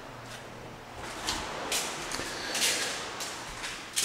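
Soft, irregular rustling swishes from a handheld camcorder being carried and handled while the person walks, with faint steps.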